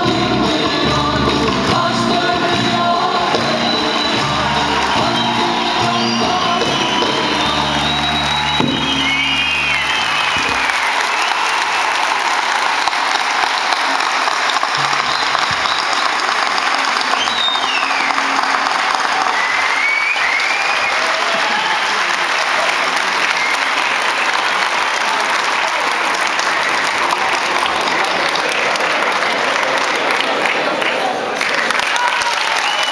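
Turkish folk ensemble of bağlamas and percussion playing a dance tune, which ends about ten seconds in. Sustained audience applause follows, with a few whistles.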